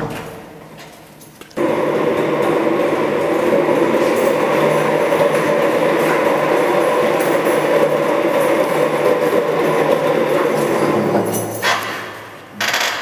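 Casters of a wheeled office chair rolling over a hard tiled floor as it is pushed along with a person's weight on it: a steady rolling rumble that starts suddenly about a second and a half in and eases off near the end.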